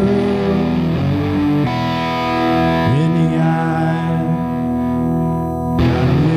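Distorted electric guitar playing sustained lead notes with upward string bends, ringing into a held chord that gives way to a new one near the end.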